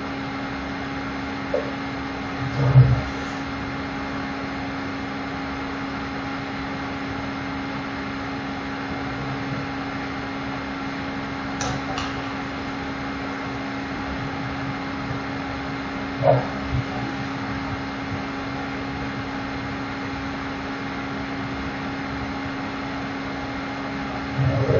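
Steady mechanical hum with a constant low tone running under everything, with two sharp clicks close together about halfway and a couple of brief low bumps.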